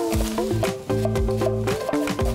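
Background music: sustained notes over a low bass line, changing every half second or so.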